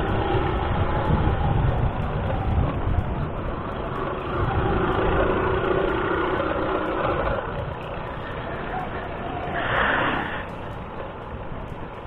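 Small motor scooter engine running steadily while riding, mixed with wind and road rumble on the handlebar-mounted camera's microphone. A brief hiss comes about ten seconds in.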